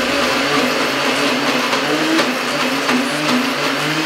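Countertop electric blender running steadily, puréeing a thick mixture of chickpeas, tahini, oil and water into hummus.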